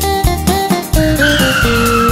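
Upbeat backing music with a steady beat; about a second in, a cartoon tyre-screech sound effect comes in over it, its pitch slowly falling.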